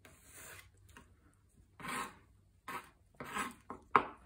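Kitchen knife slicing fresh jalapeno peppers into thin rings on a plastic cutting board: several short, crisp cutting strokes at irregular intervals, with a sharp tap of the blade on the board at the end.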